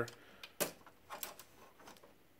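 A sharp small plastic click a little over half a second in, then a few fainter ticks, as wire-harness cable connectors are pulled from the side of an HP Color LaserJet Pro printer.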